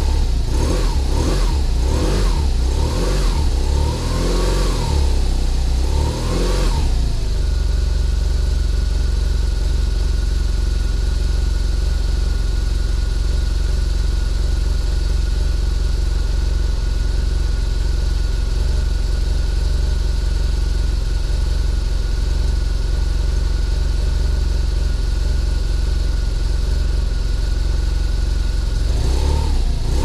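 A BMW R1200RT's boxer-twin engine revved in a series of quick blips for the first seven seconds or so, then idling steadily with a thin steady whine over it. Revving starts again at the very end.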